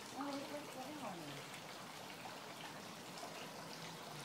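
A faint, low voice murmuring in the first second and a half, then only a faint steady hiss of background noise.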